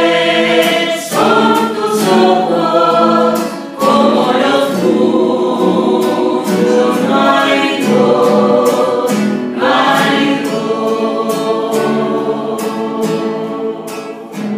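A small mixed group sings a Spanish-language hymn to the Virgin Mary together, in phrases, over a strummed acoustic guitar. The sound fades near the end.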